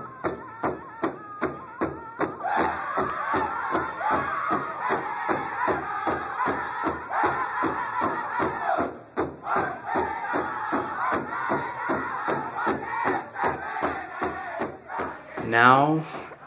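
Powwow-style drum group: a big drum struck in a steady beat of about three strokes a second, with several voices singing high over it from about two seconds in and breaking off briefly near the middle.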